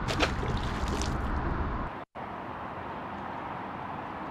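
A hooked sheepshead splashing at the water's surface beside the boat, a couple of short sharp splashes over a low wind rumble. It cuts off suddenly about halfway through, leaving a quieter steady outdoor hiss.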